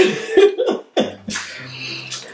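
A person coughs in short sharp bursts after a clipped word, then a low steady hummed "mm".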